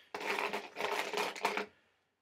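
Crinkling and crackling as a small wrapped item is opened by hand, a quick run of dense little clicks lasting about a second and a half.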